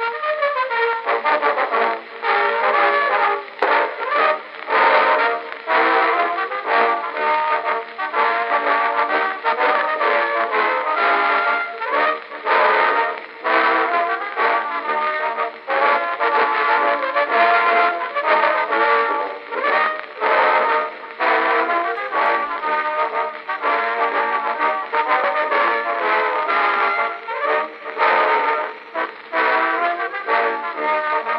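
Military band music with brass, sustained notes changing steadily throughout.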